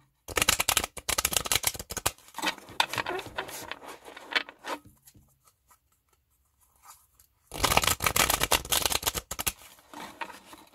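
A tarot deck being shuffled by hand: bursts of rapid flicking and riffling of cards against each other, stopping for about two seconds midway, then a final louder burst near the end.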